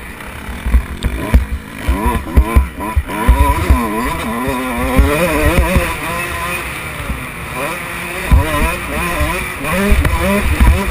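Motocross bike engine revving up and down as the throttle opens and closes, heard on board, with short low thumps and buffeting on the microphone.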